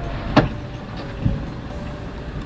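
Inside a stationary car: the low steady rumble of the running car, with a sharp knock about half a second in and a duller thud a little past the middle, as passengers come in at the open rear door.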